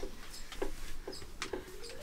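An 8-month-old baby making a few faint, short cooing sounds, with a few light clicks and knocks of movement inside the caravan.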